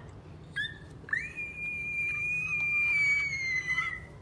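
A high whistled note: a short blip about half a second in, then one long note from about a second in, held and slowly falling in pitch towards the end.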